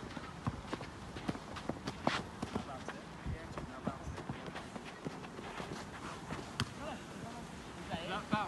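Players running on an artificial-turf pitch, their footfalls and the handball's bounces and catches making scattered sharp knocks. The loudest knocks come about two seconds in and again near seven seconds, with faint voices in the background.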